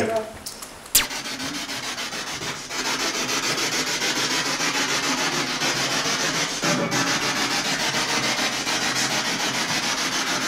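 Spirit box hissing with radio static, chopped by a fast, even stepping as it sweeps through stations; it switches on with a click about a second in and gets louder near three seconds.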